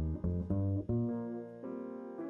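Double bass played pizzicato: a quick run of about four plucked low notes in the first second. Sustained chord tones from another instrument ring over it in the second half.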